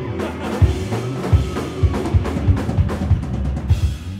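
Live rock band playing a loud instrumental burst, the drum kit to the fore with bass drum hits, snare and cymbals over the bass and guitar, cutting off abruptly at the very end.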